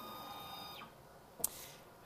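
AMCI SMD23E integrated stepper motor driving a ball-screw actuator, a faint steady whine that stops a little under a second in. A single sharp click follows about a second and a half in.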